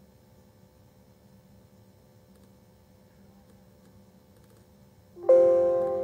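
Faint room tone with a low steady hum, then about five seconds in a single electronic chime from the computer, several bell-like tones sounding together and fading away.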